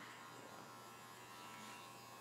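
Electric hair clippers running on a client's neckline: a faint, steady buzz.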